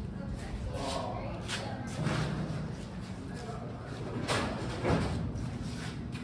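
Faint, indistinct men's voices over a steady low hum, with two sharp knocks about four and five seconds in.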